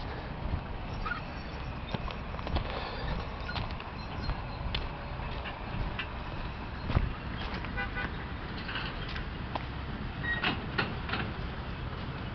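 Footsteps of a person walking on sand and gravel, with scattered irregular clicks, over a steady low rumble.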